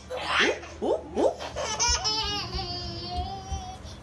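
A toddler laughing, rising into one long high-pitched squeal in the second half, after an adult's quick run of playful rising 'ooh' calls.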